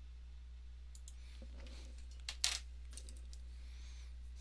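A few faint clicks over a steady low hum, the sharpest a quick double click about two and a half seconds in: a pointer device clicking to pick a pen colour on screen.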